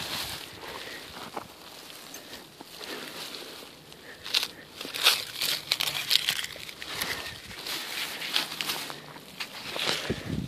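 Plastic grocery bag crinkling in the hand as litter is gathered into it. The crinkling is faint at first and grows into irregular sharp crackles from about four seconds in.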